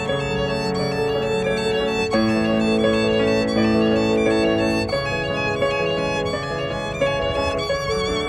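Violin and digital piano duet: the violin plays long, held notes with vibrato over the piano's accompaniment, the melody moving to a new note every two or three seconds.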